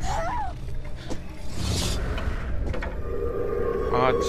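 Horror film trailer soundtrack: a low rumble under a brief wavering cry near the start and a hiss in the middle, then a steady humming drone that comes in about three seconds in.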